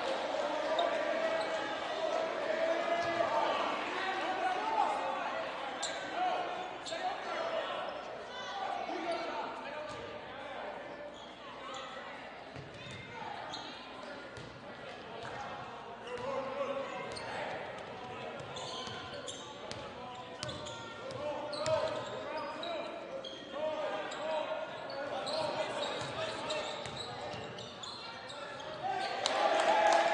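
Basketball bouncing on a hardwood gym floor during play, with indistinct voices of players and spectators echoing through the hall.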